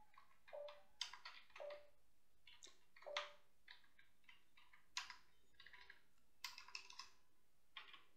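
Faint computer-keyboard keystrokes: short irregular clusters of clicks with pauses between them, as a terminal command is typed and corrected.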